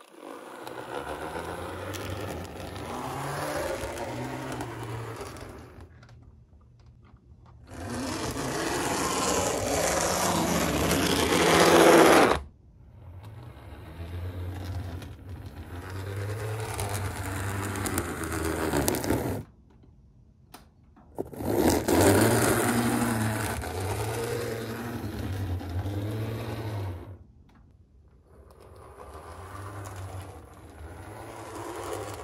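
A rebuilt 1950s Bowser HO PCC model streetcar running on uneven homemade street track: the small five-pole motor and gear drive whir, with wheels scraping and rattling on the rails. The sound comes in runs of several seconds broken by sudden stops, and the loudest run swells before cutting off about twelve seconds in.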